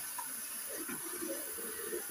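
Bathroom tap running steadily into the sink, a soft even hiss of water.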